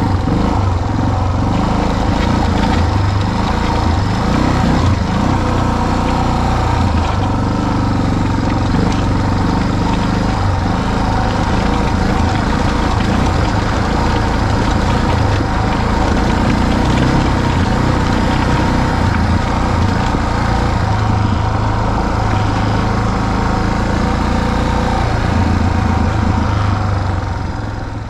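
Motorcycle engine running steadily while being ridden, at an even, unchanging pitch and level, fading out at the very end.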